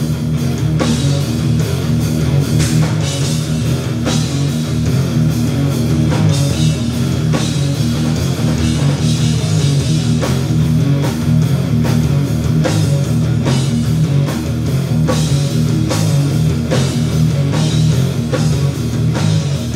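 Live rock band playing loud and continuously: electric guitars over a drum kit keeping a steady beat.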